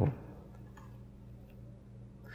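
Quiet room tone with a steady low hum, broken by two faint ticks about three quarters of a second apart.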